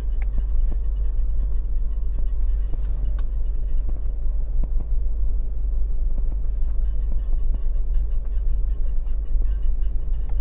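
Steady low rumble of a car rolling slowly at low speed, heard from inside the cabin, with a few faint ticks and knocks.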